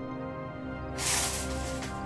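Shower curtain being pulled open: a bright swish of the curtain and its rings sliding along the metal rod, starting about a second in and lasting about a second, over soft background music.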